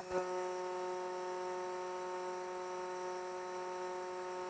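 Vacuum cupping machine running, a steady even hum with no change in pitch.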